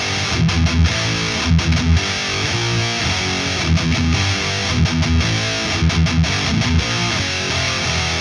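Distorted electric guitar, an ESP LTD M-1000HT, playing a heavy metal power-chord riff that mixes chugging low notes with moving chords.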